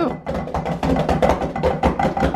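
Drumsticks striking a rubber drum practice pad in a quick run of strokes, several a second.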